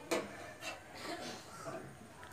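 A long wooden spatula knocking and scraping in a metal kadai while stirring carrot payasam: one sharp knock right at the start, then a few softer clatters.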